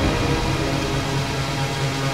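Instrumental passage of a future rave electronic dance remix, with no vocals: a sustained synth chord over a steady bass note, with a hiss-like noise wash.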